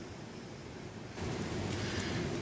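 Steady, even background rush of outdoor noise with no distinct events, growing a little louder about a second in.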